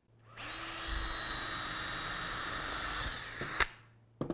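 Ryobi cordless drill spinning up and boring a hole through the two layers of a Kydex holster through a steel drill guide, running steadily for about two and a half seconds before the trigger is released and it winds down. A single sharp click follows near the end.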